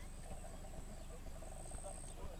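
Frogs calling from the lake, a rapid rattling trill repeated over and over, over a faint steady low hum.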